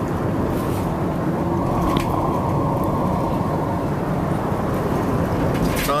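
Steady road and engine noise of a van driving along, heard from inside the cabin.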